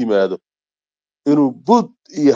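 Speech only: a voice talking, breaking off for about a second in the middle before going on.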